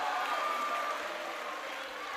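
Theatre audience laughing and clapping, a steady wash of crowd noise that eases slightly toward the end.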